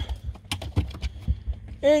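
Quick irregular clicks and light thumps: dogs' claws and paws scrabbling on the car as they climb in.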